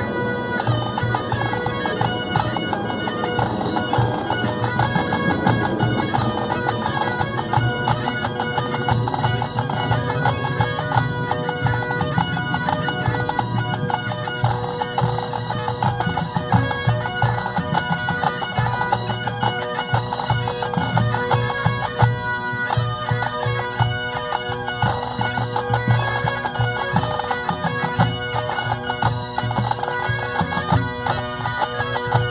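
Pipe band playing: Great Highland bagpipes carrying the tune over their steady held drones, with drums keeping time underneath.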